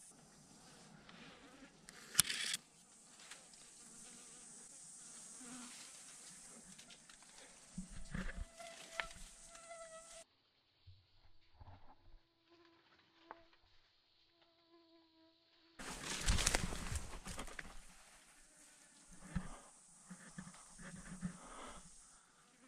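Flies buzzing close by, a faint wavering hum, over a steady high insect hiss, with scattered rustles, knocks and clicks from moving through brush and rock. The high hiss cuts out suddenly about halfway and returns after a loud burst of noise about two-thirds through.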